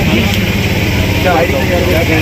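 Indistinct voices of people talking nearby, over a steady low hum of background noise.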